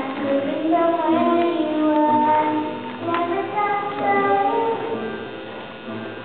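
A young girl singing solo into a handheld microphone, holding sustained notes that glide from one pitch to the next.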